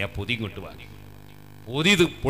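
A man preaching into a microphone, a few words in the first half second and again just before the end, with a steady electrical mains hum from the sound system filling the pause between.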